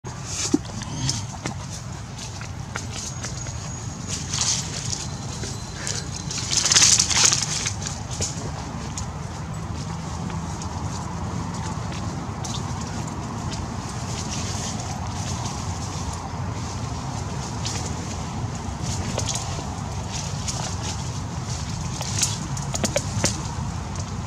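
Outdoor ambience: a steady low hum with a few brief rustling bursts, the loudest about seven seconds in, and faint thin high tones early on.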